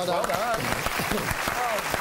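Studio audience applauding a correct answer, with voices and a laugh heard over the clapping.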